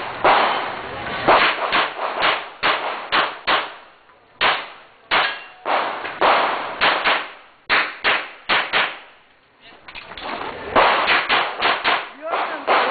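Semi-automatic pistol fired in rapid strings during a practical shooting stage: about twenty sharp shots in quick pairs and runs, each with a short echo, broken by a couple of brief pauses.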